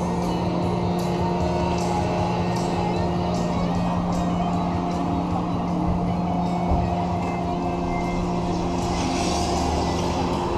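An idling engine: a steady drone at one unchanging pitch.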